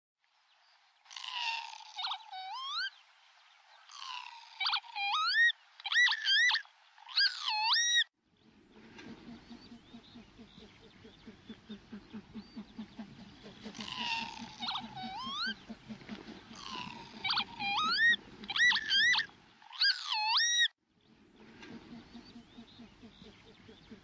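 Northern lapwing calls: quick runs of swooping cries that rise and fall sharply in pitch, the same run of calls coming twice. Under the middle part runs a low, rapidly pulsing sound.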